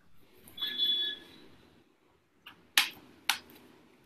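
Small household noises picked up over open video-call microphones: a brief high ringing tone about half a second in, then two sharp knocks about half a second apart near the end.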